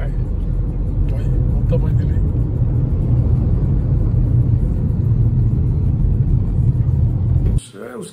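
Steady low rumble of a car's engine and tyres heard from inside the cabin while driving along a highway; it cuts off suddenly near the end.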